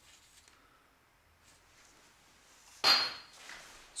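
Near quiet, then about three seconds in a single sharp metallic clatter with a short ringing tail, as metal workshop parts or tools are handled at the brake.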